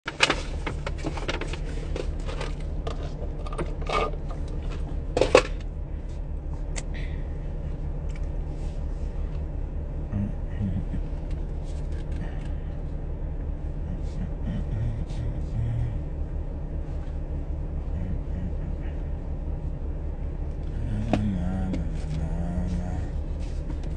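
Steady low rumble inside a car cabin. A run of sharp clicks and knocks comes in the first few seconds, the loudest just past five seconds.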